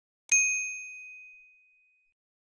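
Notification-bell sound effect: a single bright, high ding that starts a moment in and fades away over about a second and a half.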